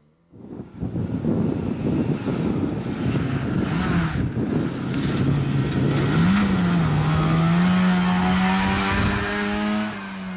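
Rally car passing at speed: a sudden rush of tyre and gravel noise about a third of a second in over a low engine note, then, from about six seconds in, a Trabant's two-stroke engine rising briefly in pitch and holding a steady higher note as the car accelerates away.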